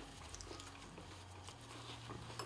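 Faint chewing of spicy shrimp: soft, scattered mouth clicks over a low room hum.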